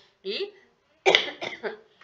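A person coughs about a second in, a short harsh burst that fades quickly.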